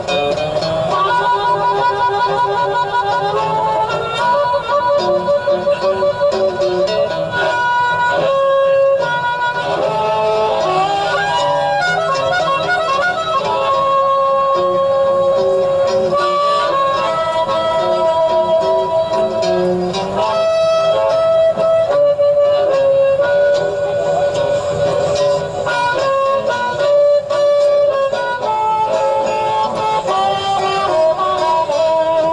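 A street recording of blues harmonica playing a slow instrumental groove over guitar backing, with long held notes.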